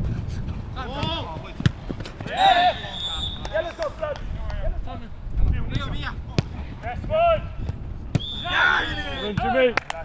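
Footballers shouting and calling to each other during a passing game, with several sharp thuds of a football being kicked scattered through.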